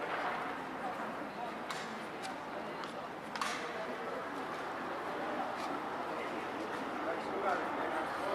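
Street ambience of indistinct voices of passers-by talking over a steady background hum, with a few sharp clicks.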